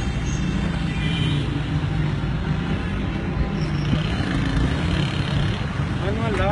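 Steady low rumble of street traffic and running car engines.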